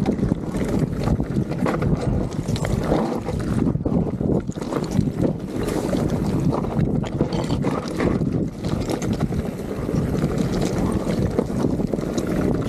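Vitus Sommet 29 enduro mountain bike ridden fast down rocky singletrack: knobby tyres crunching and rattling over loose stones and rock, with a constant run of small knocks and clatters from the bike. Steady wind rush on the microphone underneath.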